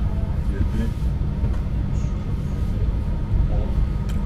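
Steady low rumble of a railway sleeper carriage, with faint voices in the background.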